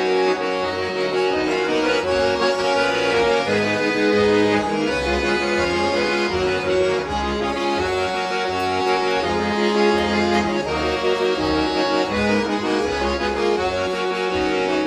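Two accordions playing a tune together live: a melody over sustained chords, with a bass line of short low notes underneath.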